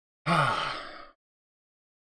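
A man's short voiced sigh, falling in pitch over about a second.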